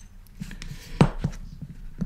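Light handling taps and clicks of a leather strap and metal snap-fastener parts, with one sharper click about a second in.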